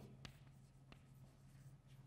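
Faint chalk writing on a blackboard: a few light taps and scratches of chalk on slate, over a low steady hum.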